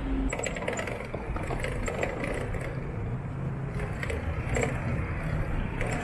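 Bicycle freewheel and drivetrain ticking and rattling irregularly as the bike moves off, over a low hum of city traffic.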